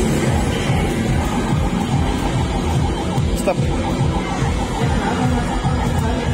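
Loud amusement-arcade din, mostly game-machine music with a steady beat and a run of short repeating electronic notes, with a voice calling "stop" about halfway through.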